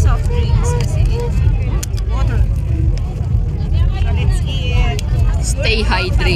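People talking, with voices coming and going, over a steady low rumble.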